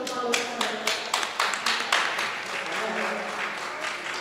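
People clapping: a quick run of sharp, separate claps that thickens into general applause.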